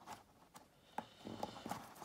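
A few faint, uneven clicks and light taps from a lampshade tucking tool working the fabric edge in behind the lampshade's rigid ring.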